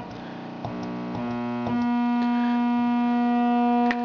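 Raw ramp (sawtooth) output of an MFOS voltage-controlled oscillator, a buzzing tone that jumps up in pitch a few times in the first two seconds as the calibration control voltage is raised, then holds one steady pitch.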